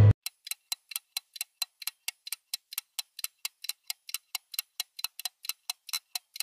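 Music cuts off abruptly, then a rapid, even ticking begins, about four sharp ticks a second, like a clock or timer ticking sound effect.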